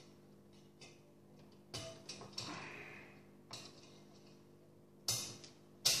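Small clicks and clinks of a fan's wire retention clips and plastic frame being worked off a tower CPU air cooler's aluminium heatsink: several separate handling noises, the loudest near the end as the fan comes free.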